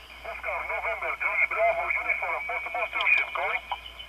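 A distant amateur station's voice received on single sideband through an Elecraft KX3 transceiver on the 10-metre band: thin, narrow-band radio speech with a steady high tone behind it.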